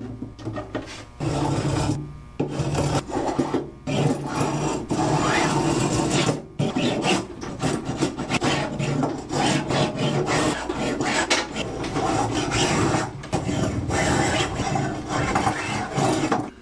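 Hand spokeshave cutting along a wenge and maple guitar neck in repeated rasping strokes, with short pauses between runs of strokes. Wenge tends to splinter and the maple is dicey under the blade, which makes the work frustrating.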